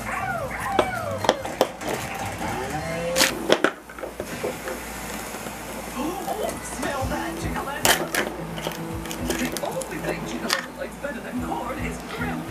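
Background television voices and music, with sharp clicks and rustling from hands opening a plastic toy capsule and pulling at the paper wrapping inside.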